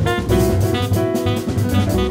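Live jazz quartet playing: tenor saxophone carrying the melody line over double bass and a drum kit, with piano in the band.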